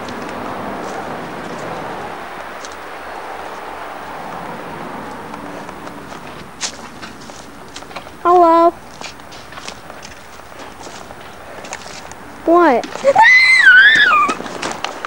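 Rustling with scattered footsteps on grass, then a short held shout about 8 seconds in. Near the end a child screams, high-pitched, with the pitch rising and wavering.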